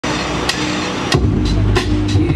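Live hip-hop band music over a stage PA: drum-kit hits, with a deep bass line coming in about a second in.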